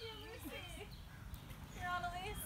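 Women's voices calling out to each other, too indistinct for words, with one longer held call near the end.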